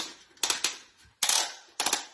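Hard plastic toy parts clicking and clattering in a few quick bursts, with a louder rattling burst a little over a second in, as a toy excavator is handled.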